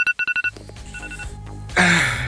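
Phone alarm beeping: a fast run of high, two-pitched electronic beeps that stops about half a second in, with one faint beep again about a second in. A loud groan follows near the end.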